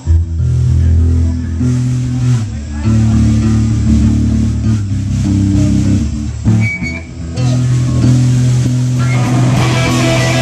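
Electric bass guitar playing a riff of long held low notes through an amplifier, largely on its own. The rest of the band comes in near the end, filling out the sound.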